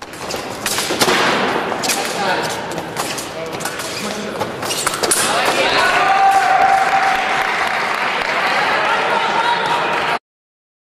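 Sabre bout in a large hall. Sharp clicks of blades and thuds of footwork come mostly in the first half, over voices. About halfway in there is one long held cry.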